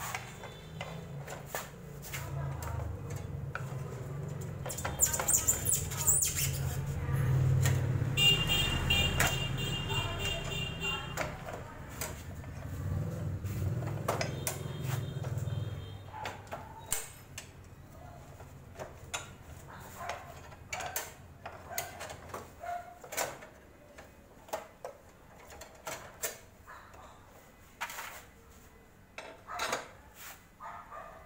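Metal clinks and knocks of a motorcycle's rear wheel and drum-brake parts being handled and fitted back on. A low droning hum runs under the first half, and the clicks grow sparser and sharper after it fades.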